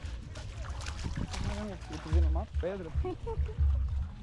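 Husky whining and yowling in a string of short rising-and-falling calls, most of them in the second half. Low gusts of wind rumble on the microphone under them.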